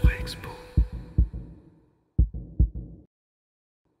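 Heartbeat sound effect: low thumps in lub-dub pairs, with the tail of intro music fading underneath, cutting off abruptly about three seconds in.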